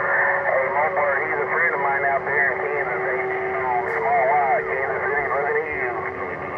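A man's voice coming over a CB radio, narrow and muffled, with a steady low whistle held under the speech.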